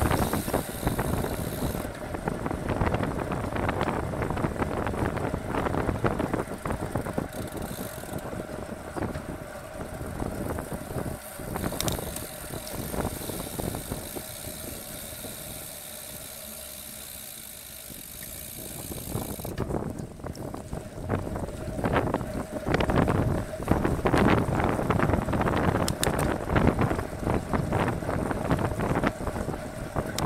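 Wind buffeting the microphone of a bike-mounted camera on a road bike at race pace, with tyre and road noise. It eases to a quieter stretch about halfway through, while the rider slows and coasts through a bend, then builds again as the rider accelerates back to about 40 km/h.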